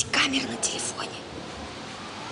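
Two girls talking in whispers, with sharp hissing 's' sounds, for about the first second before it goes quieter.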